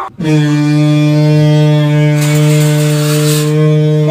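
A single low note held steadily for about five seconds, rich in overtones. It dips slightly in pitch as it starts, and a breathy hiss rides over it about halfway through.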